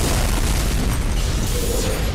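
Cartoon explosion sound effect: a self-destruct detonation going off as one loud, sustained blast that is heaviest in the low end.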